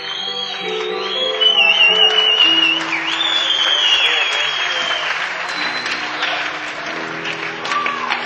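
Live rock concert: the audience applauds and cheers loudly, with high wavering whistles over it, while the band holds sustained notes underneath.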